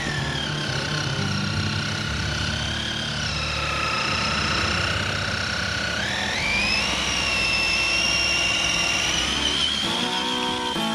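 Traxxas TRX-4 RC crawler's electric motor and gearbox whining as it drives through snow. The whine sags in pitch about three seconds in, stays low, then climbs steeply about six seconds in and holds high as the throttle opens.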